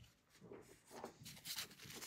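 Near silence with a few faint, short handling sounds from a printed circuit board being held and moved in the hands.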